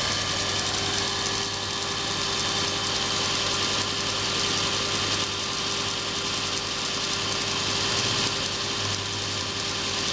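Electric grinder motor running steadily, spinning a printer stepper motor that is working as a generator, with a continuous mechanical hum.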